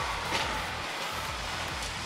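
Busy indoor arena ambience with music playing in the background, and a thin steady high tone that fades out about half a second in.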